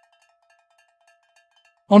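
Faint background music: a single held bell-like tone, very soft beneath where the narration would be, with narration starting at the very end.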